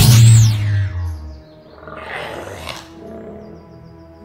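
A sudden sci-fi teleport sound effect: a deep boom lasting about a second with a high sweeping tone over it, as an object is zapped into place. A shorter rushing sound follows about two seconds in, over steady background music.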